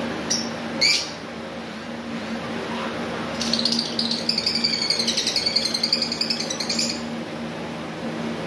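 Cockatiel calling: two short sharp chirps about half a second apart, then, from about three and a half seconds in, a rapid warbling run of high chirps lasting about three and a half seconds. A steady low hum runs underneath.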